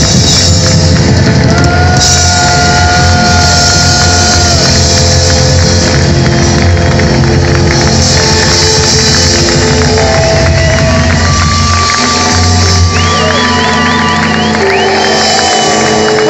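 Loud live rock band through a PA: electric guitar, bass guitar and drums. The lead guitar plays long sustained notes, with a fast wavering vibrato bend in the second half and a long held high note near the end.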